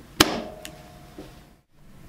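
Shunt trip / undervoltage trip accessory snapping into its slot in a Schneider Electric PowerPact H-frame molded case circuit breaker: one sharp click as it locks into place, with a brief ring after it and a fainter click soon after.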